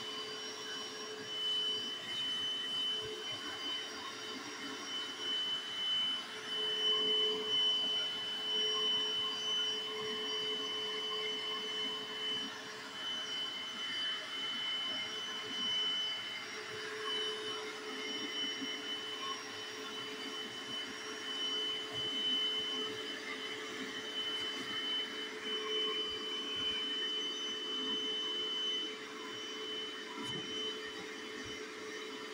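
Bissell SpotClean portable carpet cleaner's suction motor running with a steady high-pitched whine, its level wavering as the hand tool is worked over the carpet.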